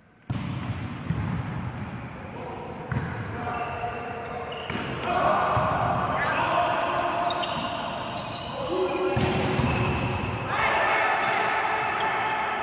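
Volleyball being struck again and again in a reverberant sports hall: a sharp serve hit, then the smacks of passes and attacks during a rally. Players' voices call and shout in between.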